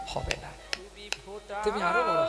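A man's voice speaking and half-singing a kirtan line, broken by about four sharp clicks in the first second and a half. Near the end his voice rises into song as a steady musical accompaniment comes in.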